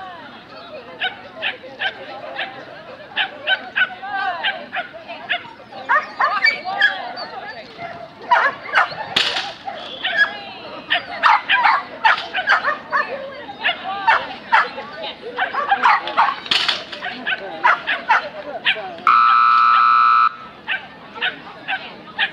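A dog barking over and over in short, sharp yips, most densely in the second half. Near the end, a loud steady signal tone sounds once for a little over a second.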